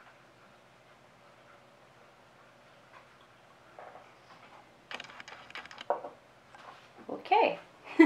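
Quiet room tone for about the first five seconds, then a woman laughing in short bursts, loudest near the end.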